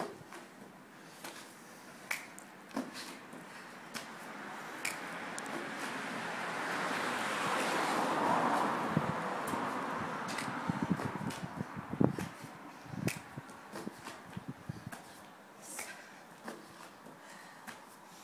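Scattered light taps and thumps of burpees on foam floor mats: hands and feet landing, and the landings of the jumps, with a few firmer thumps about twelve and thirteen seconds in. Behind them a rushing noise swells to a peak about eight seconds in and fades again.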